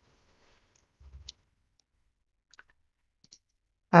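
A few faint computer mouse clicks in a quiet room. The loudest is a short cluster about a second in, with smaller single clicks later.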